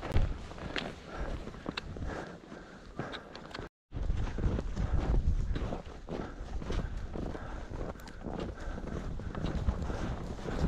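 Footsteps crunching in crusty, hard-packed snow, about one step a second, over low wind buffeting the microphone. The sound cuts out briefly just before halfway, then the steps and wind carry on.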